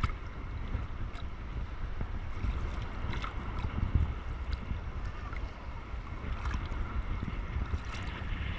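Small sea waves lapping and sloshing around a camera held at the water's surface: a continuous low rumble of water and wind buffeting, with scattered small splashes and drips.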